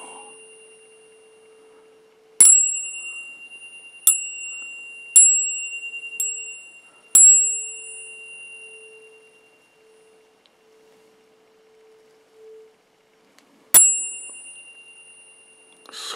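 Metal tuning forks struck six times, each strike a sharp ping that rings on as a high, clear tone and fades over a few seconds. The first comes about two seconds in, four more follow about a second apart, and after a quiet gap the last comes near the end. A low steady tone hums underneath.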